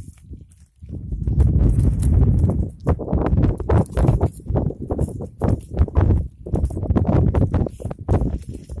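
Goats browsing dry scrub close up: an irregular run of crunching, tearing and rustling as twigs and leaves are pulled off and chewed, starting about a second in.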